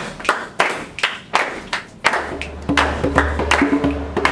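A group clapping hands in a steady rhythm, about three claps a second. About halfway in, music with a deep steady bass and pitched notes comes in under the claps.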